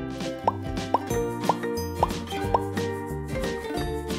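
A cartoon 'plop' sound effect repeats five times, about half a second apart: each is a short bloop rising in pitch. It plays over cheerful background music and marks clay pieces popping into place.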